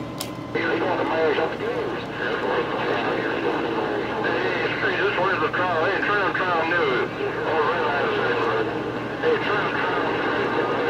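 Galaxy CB radio receiving several distorted, overlapping voice transmissions through its speaker, garbled and warbling over a steady hum, after a click as the channel opens. The signal is rough, as in a crowded skip channel, with stations talking over one another so that no words come through clearly.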